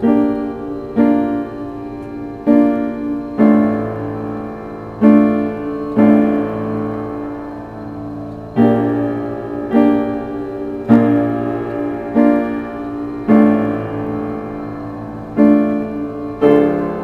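Piano playing a slow, dark original piece: chords struck about once a second, each left to ring and fade before the next.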